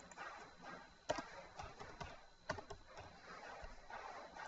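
Faint, scattered clicks of a computer keyboard and mouse, a handful of separate taps over low room noise, as a search is typed and entered.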